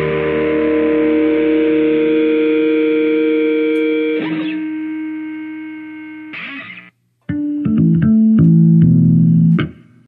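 Electric bass played along with a rock song recording: a held chord rings and slowly fades, with a sliding note about four seconds in. After a brief silence around seven seconds, a run of short plucked notes plays and then cuts off suddenly near the end.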